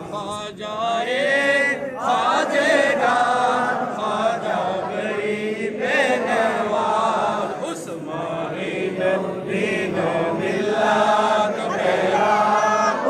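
A group of men's voices chanting together in unison, without instruments: the standing salutation (qiyam) of a milad, sung in melodic phrases.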